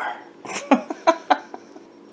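A woman laughing briefly: three or four short, sharp bursts of laughter in quick succession starting about half a second in.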